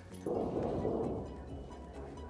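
A distant explosion from military training: a dull rumbling boom that starts suddenly and fades away over about a second.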